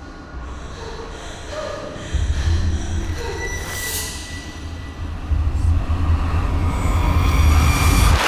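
Horror-trailer sound design: a deep rumble that comes in suddenly about two seconds in and swells toward the end, under faint eerie tones, with a brief swish about four seconds in.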